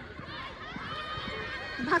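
Players and spectators calling out and chattering at a distance, several voices overlapping.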